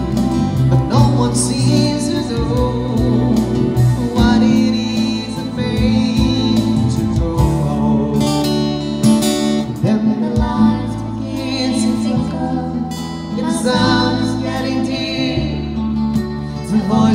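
Steel-string acoustic guitar playing a melodic instrumental passage over a steady accompaniment of held bass notes and chords.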